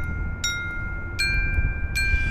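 Glockenspiel notes struck one at a time, about three-quarters of a second apart, each ringing on with a bright, bell-like tone.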